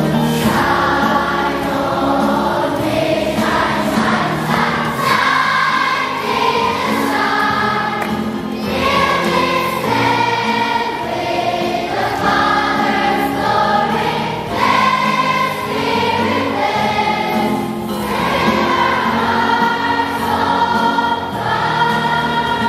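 A choir of many voices singing a Christian song with held notes that move through a melody.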